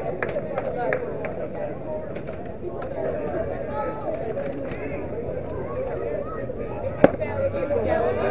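Players and spectators chattering at a youth baseball game, with one sharp pop about seven seconds in as a pitched ball smacks into the catcher's mitt.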